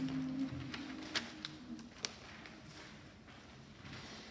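A sustained sung pitch from a few voices that stops about half a second in, followed by a few light, sharp clicks in a quiet rehearsal room.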